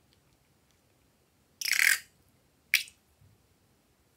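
Small rubber balloon squeezed empty, its contents spurting out in a noisy rush of about half a second, then one short sharp spurt about a second later.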